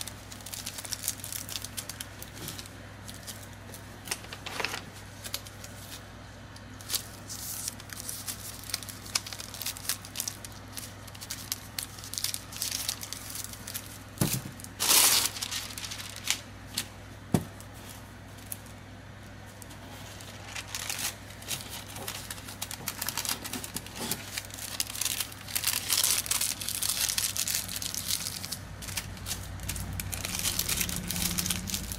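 Wax paper crinkling and rustling as it is folded by hand around a bar of soap, in a run of small crackles with a louder rustle about halfway through.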